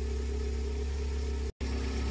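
1.9-litre 16-valve engine with Bosch K-Jetronic injection idling steadily, warmed up, with its control pressure set at about 3 bar. The sound drops out completely for an instant about one and a half seconds in.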